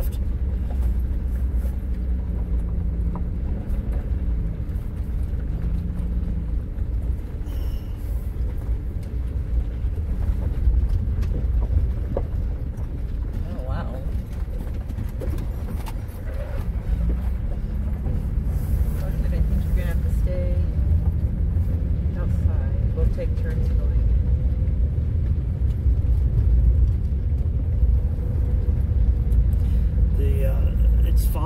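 Inside a camper van driving on a gravel road: a steady low rumble of tyres and engine.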